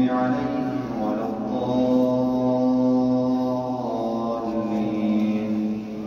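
A man reciting the Quran aloud in a melodic chant, holding one long, level note through the middle of the phrase. The pitch steps down about four seconds in, and the phrase trails off near the end.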